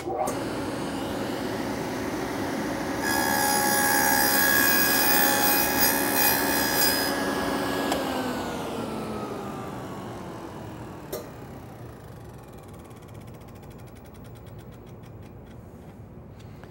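Table saw with a six-inch dado stack starting up and running, then cutting up into a wooden auxiliary fence as the spinning stack is raised into it, louder and ringing for several seconds. The saw is then switched off, and its whine falls steadily as the blade coasts down, with a single click during the run-down.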